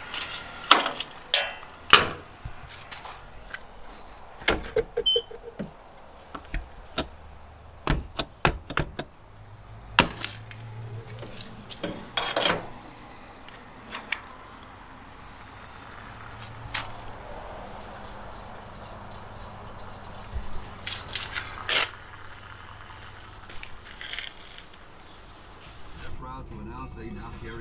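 A pickup truck being refuelled at a fuel pump. There are sharp clicks and knocks as the fuel door, filler and nozzle are handled, and from about ten seconds in a steady low hum and hiss while the fuel is pumped.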